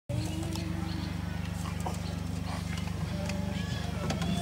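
A steady low hum with a fast, even flutter, with faint scattered clicks over it.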